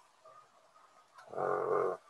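A man's drawn-out hesitation sound, a held "uhh", starting about a second and a half in after a short pause.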